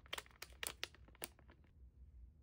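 Faint crinkling of a clear plastic packaging bag being pulled open by hand: a run of sharp crackles that stops about a second and a half in.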